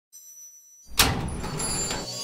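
Cinematic intro sound effect: a faint high shimmer, then about a second in a sudden heavy boom that runs on as a rumbling whoosh.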